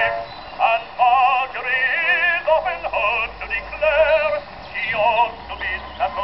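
Edison Diamond Disc phonograph playing an acoustic recording of a male bass-baritone singing with a wide vibrato, heard from about 50 to 60 feet away. The sound is thin, with almost no bass.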